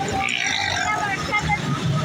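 Busy street traffic with a crowd's mixed voices: motorcycles and cars moving slowly in a jam, with people talking and calling out all around.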